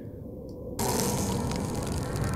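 Film soundtrack: after a faint low rumble, a steady rush of wintry wind starts under a second in.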